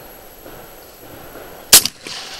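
A single shotgun blast about three-quarters of the way in, from a pump-action shotgun fired at a clay target, sharp and loud with a short ringing tail.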